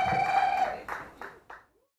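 A man's voice holding one drawn-out high note into the microphone, breaking off less than a second in. A few faint knocks follow as the sound fades out to silence.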